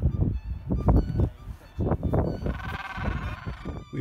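Gentoo penguin braying, a pulsing, wavering call lasting a little over a second past the middle, over low rumbling from wind on the microphone.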